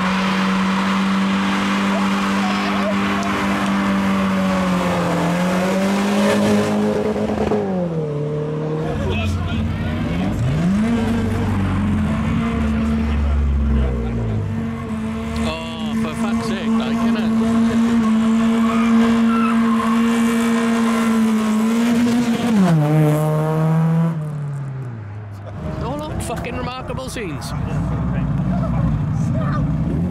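A car engine held at high revs through a burnout, a steady high note with tyre squeal. The revs sag and climb back about a third of the way in, hold again, then fall away about three-quarters of the way through. Crowd voices follow near the end.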